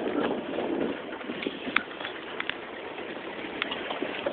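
Vehicle running noise that drops away about a second in, leaving a quieter steady hiss with a few short, sharp high chirps.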